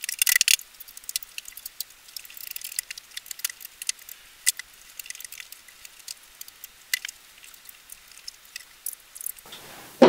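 Side panel of an Azza Solano PC tower case being fitted and pressed into place: scattered sharp clicks and scrapes, with a dense burst of rattling in the first half second.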